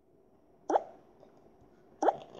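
A single short hiccup from a girl about two-thirds of a second in, a quick upward glide in pitch, over faint room tone.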